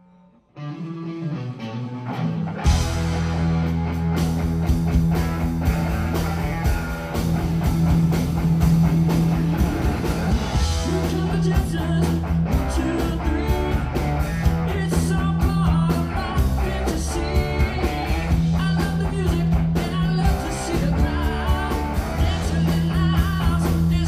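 Live rock band playing with electric guitars, bass and drums. The song starts about half a second in, and the full low end of bass and drums comes in at about three seconds.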